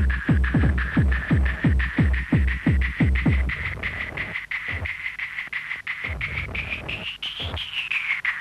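Hard techno (hardtek) track: a pounding kick drum about three beats a second under a high held synth tone. The kick drops out about four seconds in, leaving the synth line, which rises in pitch and falls back near the end.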